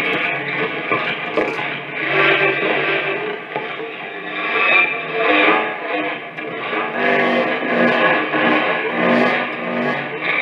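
Amplified prepared electric guitar played with objects: the strings, wedged with objects, are struck and scraped, then rubbed with a curved wooden stick. The result is a dense, distorted wash of sustained pitches and scraping noise that swells and ebbs every second or two.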